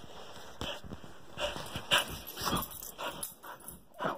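Excited dog panting and snuffling in short breathy bursts during a greeting.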